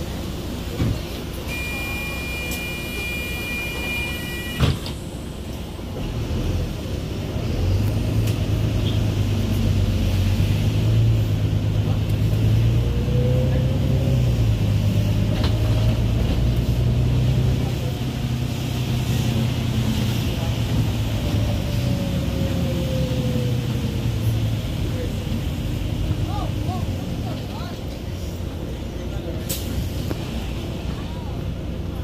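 Inside a Wright Gemini 2 double-deck bus: a steady electronic warning beep sounds for about three seconds and ends in a clunk as the doors shut. The bus then pulls away, its engine drone growing louder with a drivetrain whine that climbs and falls in pitch as it accelerates, before easing off near the end.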